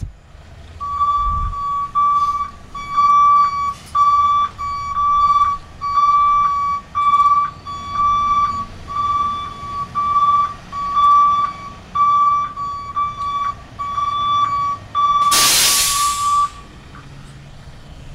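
Guzzler Classic vacuum truck's warning beeper sounding over and over, a steady high beep a little more than once a second, over the low running of the truck's engine. About fifteen seconds in comes a loud, roughly one-second hiss of released air, and the beeping stops shortly after.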